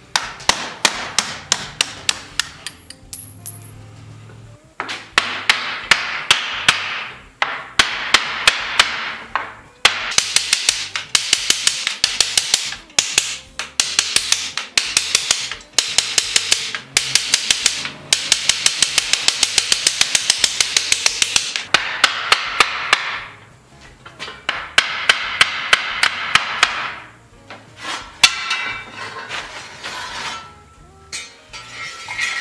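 A hand hammer striking the steel tire of a buggy wheel in fast runs of light, ringing blows, about four or five a second, broken by short pauses.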